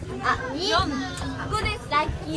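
Several girls' voices chattering over one another, high-pitched and excited.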